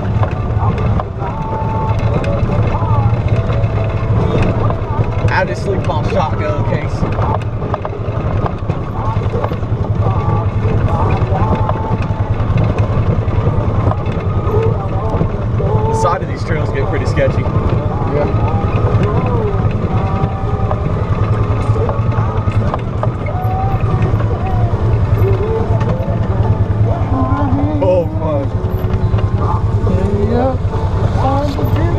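Off-road vehicle engine running steadily while driving along a rough dirt trail, a constant low drone throughout, with indistinct voices over it.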